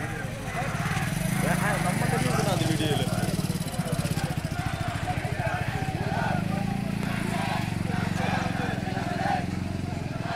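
A crowd of protesters' voices chanting and shouting, over a motorcycle engine running steadily close by.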